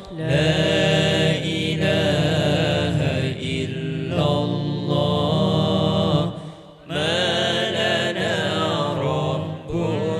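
Male lead vocalist singing a long, ornamented Islamic sholawat phrase unaccompanied by drums, over a low held backing from the other voices of the hadroh group. The singing breaks for a breath about six and a half seconds in, then goes on.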